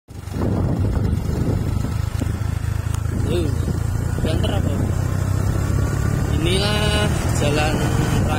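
Steady low rumble of a moving road vehicle's engine and tyres, heard from on board while driving along a paved road.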